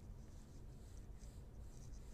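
Faint scratching of a pencil on sketchpad paper as lines are drawn.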